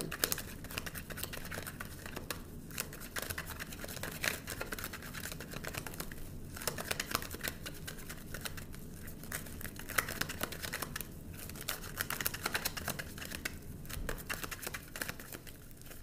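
A deck of tarot cards being shuffled by hand: a continuous run of soft card slaps and rustles, with a few brief pauses.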